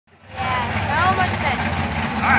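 Engine of a mud-bog 4x4 truck running steadily as the truck creeps toward the mud pit, fading in at the start, with people talking in the background.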